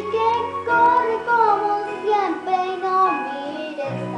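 A young girl singing a pop ballad melody along with a recorded backing track of sustained chords.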